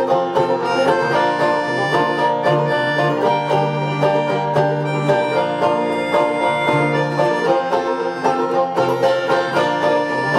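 Live instrumental passage of banjo, dobro and pianica (a keyboard melodica) played together: fast picked banjo and dobro notes under held reed notes from the pianica.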